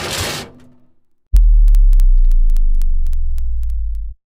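Logo sound effect: a whoosh fading out, then about a second in a loud, deep, steady hum with scattered sharp ticks.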